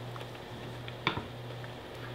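A person biting into and chewing a thin sliver of ripe cantaloupe, with faint wet mouth ticks and one short louder sound about a second in, over a low steady hum.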